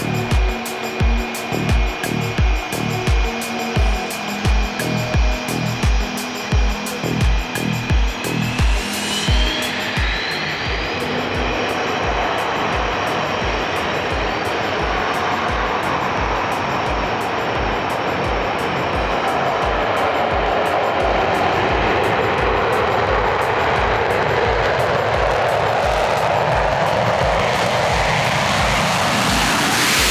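Background music with a steady beat, over which a Swiss Air Force F/A-18 Hornet's twin jet engines spool up: a whine rising in pitch about a third of the way in, then a roar that grows steadily louder and peaks near the end as the jet goes to full afterburner for a night takeoff.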